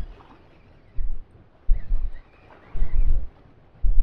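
Wind and choppy sea on a small open boat: irregular low buffeting thuds, about one a second, against a quiet background.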